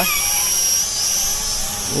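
SG900-S folding quadcopter's motors and propellers whining at a high pitch as it flies fast in speed mode two; the pitch wavers and rises briefly about halfway through.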